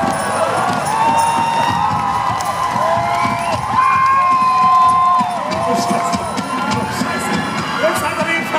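Concert crowd cheering and screaming, with clapping; many long held screams overlap and are loudest about halfway through.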